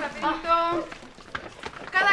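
A short voice in the first second, then quieter classroom bustle as children take their seats, with a few light knocks of wooden chairs and desks.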